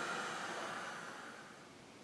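Handheld heat gun blowing hot air over wet spray ink, a steady hiss that fades away over the two seconds and is gone near the end.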